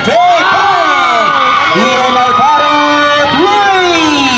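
Crowd of spectators at an outdoor basketball game cheering and shouting, many voices overlapping loudly, reacting to a good play.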